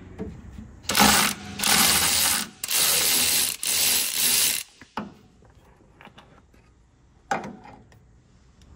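Socket ratchet spinning out the center bolt of an MGB's canister-type oil filter, in four runs of clicking about a second each, followed by a single sharp click.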